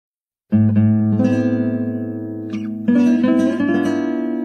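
Solo acoustic guitar music starting about half a second in: plucked notes ringing over a held low bass note, with a new chord struck near the three-second mark.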